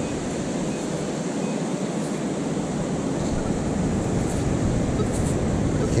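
Steady rush of ocean surf with wind noise on the microphone.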